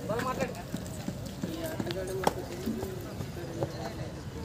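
Live kabaddi match sound: shouting voices, one of them holding a steady, repeated call like a raider's "kabaddi" chant, with a few sharp slaps or claps. The sharpest slap comes a little past halfway.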